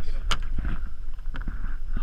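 Low wind rumble on the microphone, with a sharp click about a third of a second in and a fainter one about a second later.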